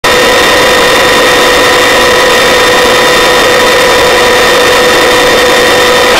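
Search-and-rescue helicopter in flight: a loud, steady rush of rotor and engine noise with a constant whine and several even overtones above it.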